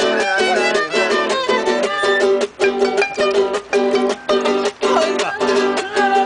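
Live acoustic string band playing an instrumental passage: quick, steady strummed chords, with a melody line over them that slides in pitch.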